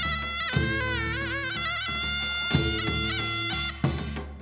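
Taepyeongso (hojeok), the Korean conical double-reed shawm, playing a loud, bending, wavering melody that settles into long held notes. Under it the samul percussion of drums and gong strikes a few times, with the sharpest strokes near the middle and just before the end.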